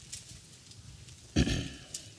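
Quiet room tone, then a man's voice speaking a single low, throaty word about one and a half seconds in.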